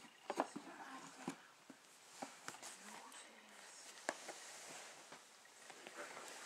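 Cardboard box and plastic packaging of a model locomotive being handled: scattered clicks, crinkles and light knocks.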